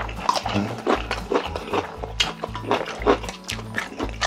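Close-miked eating sounds: noodles slurped from a bowl and food chewed in many short, wet, irregular smacks. Background music with a steady, pulsing bass plays underneath.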